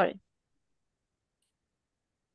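A voice finishing a spoken sentence in the first moment, then near silence, with one faint tick about a second and a half in.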